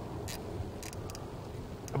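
A few faint, sharp clicks, scattered over two seconds, from a rifle scope's elevation turret being dialled up, over a steady low outdoor background.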